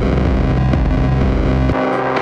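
Electronic music track played through the AudioThing Crusher filter and bit-crusher plugin on its Classic Bits preset: the treble is cut away, leaving a bass-heavy, gritty sound. Near the end the deep bass drops out as the preset switches to Console, a band-pass setting.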